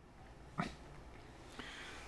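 Faint, steady room tone with a low hum, with one brief soft sound about half a second in.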